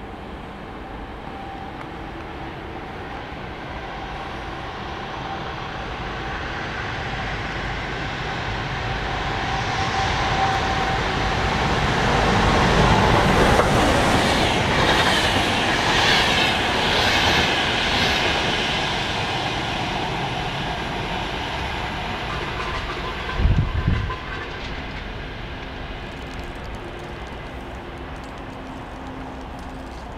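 VR InterCity train hauled by an Sr2 electric locomotive passing through the station at speed without stopping. The rumble of wheels on the rails builds as it approaches, is loudest as the coaches rush past, then fades away. A brief low thump comes about three-quarters of the way through.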